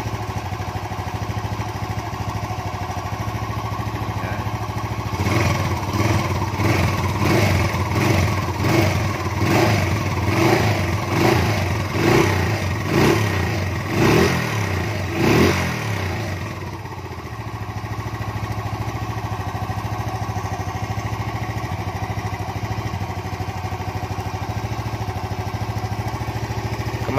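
Bored-up Honda Grand's single-cylinder four-stroke engine, fitted with a reworked camshaft, idling, then revved in about a dozen quick throttle blips, roughly one a second, from about five seconds in until about sixteen seconds, before settling back to idle. It runs smooth with a light tick-tick-tick, with the valve clearance set at 0.10.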